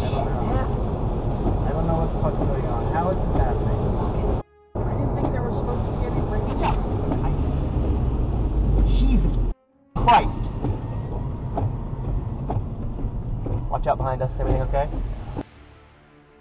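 Dashcam audio recorded inside moving cars: a steady, loud engine and road rumble with muffled voices of the occupants over it, broken by two abrupt cuts. A sharp knock stands out about ten seconds in.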